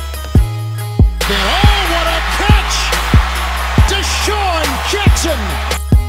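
Backing song with a steady deep bass and a strong bass hit roughly every two-thirds of a second; a gliding vocal line comes in about a second in.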